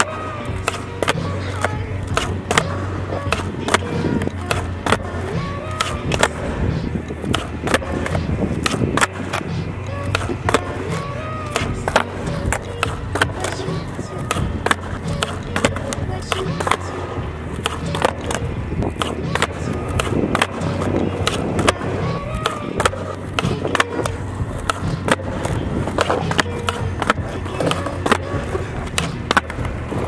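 Skateboard kickflips repeated over and over on concrete: tail pops, board clacks and landings, and wheels rolling, under background music with vocals.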